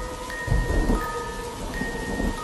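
Eerie soundtrack of slow, sustained chime-like notes over a rain-and-thunder sound effect, with low rumbles swelling about half a second in and again near the end.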